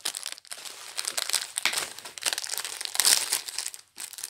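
A small clear plastic bag crinkling as it is handled and opened by hand, in a string of irregular crackles, loudest about three seconds in.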